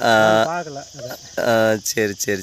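A man's voice in two drawn-out, held syllables, one at the start and one shortly before the end, with a faint steady high insect buzz behind.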